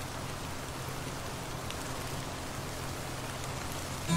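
Rain sound effect on a lo-fi tape recording: a steady, even hiss of falling rain with a low steady drone underneath.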